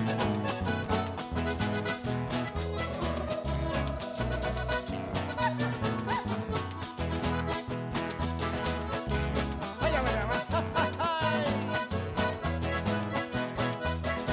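Live Chilean cueca (a 'chilenita') played on strummed acoustic guitars, bass guitar and accordion, with a steady dance rhythm.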